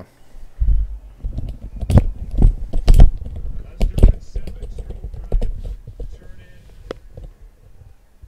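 Computer keyboard typing and clicking, with heavy thumps against the desk close to the microphone, loudest about two to four seconds in and thinning out near the end.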